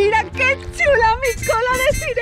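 A woman's voice, high and wavering in pitch, with no clear words, over background music with a steady low bass.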